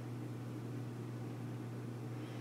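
A steady low hum under a faint hiss.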